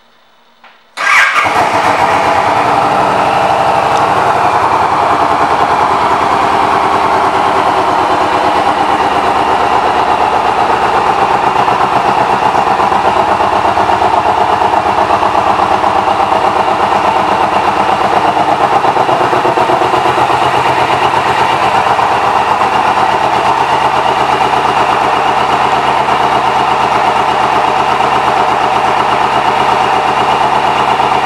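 2008 Suzuki Boulevard C109RT's 1783 cc V-twin starting about a second in, with a short burst at the catch, then idling steadily.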